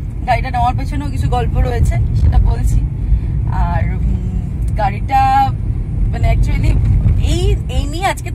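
Steady low rumble of road and engine noise inside a moving car's cabin, under a person talking on and off.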